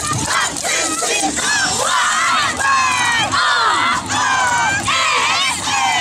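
A group of yosakoi dancers shouting calls together, many high voices at once in a string of short, loud shouts, with a few longer held cries in the middle.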